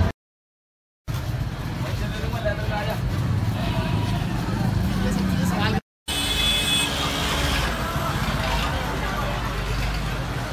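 Busy street-market ambience: motor traffic and people talking around the stalls. It drops to dead silence for about the first second and again for a moment just before six seconds in, where the clips are cut.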